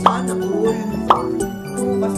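Background music with steady held notes, broken by two short blip-like sound effects: one right at the start and one about a second in.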